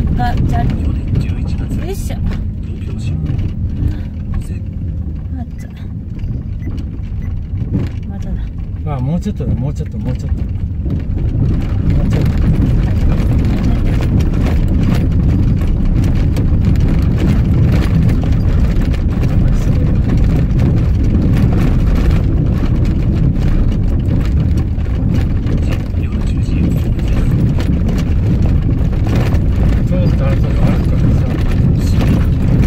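Car driving over a rough gravel dirt road, heard inside the cabin: a steady low rumble of tyres and engine with frequent knocks and rattles from stones and bumps, louder from about twelve seconds in.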